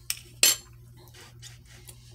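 A metal spoon clinking against a plastic yogurt cup: a faint tick, then one short, sharper clink about half a second in, followed by a few small ticks.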